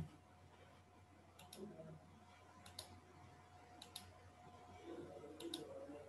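Near silence with a faint steady hum, broken by four faint double clicks spread across a few seconds.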